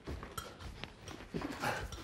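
Faint soft knocks with a short, light clink of crockery about a third of a second in: a banana dropping and dishes being handled.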